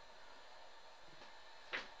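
Very quiet pause: faint, steady hiss of room tone, with a short faint swell near the end.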